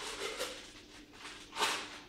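Newspaper rustling as it is unwrapped from a bottle, with one short, louder burst of paper noise about one and a half seconds in as the wrapping is pulled off.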